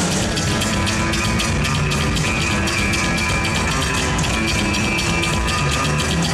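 Live psychobilly band playing a loud instrumental passage: upright double bass driving over a fast, steady beat on the drum kit, with no vocals.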